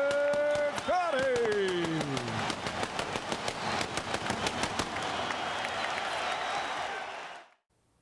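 Ring announcer's long drawn-out call of the winner's name, held and then falling away about two seconds in, over an arena crowd cheering and clapping. The crowd noise then fades out shortly before the end.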